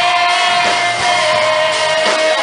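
Live pop song played by a band, with a male voice holding one long sung note over it.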